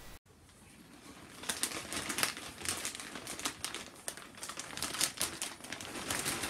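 Large plastic popcorn bag crinkling as it is handled and rummaged in, a run of quick irregular crackles that starts about a second in.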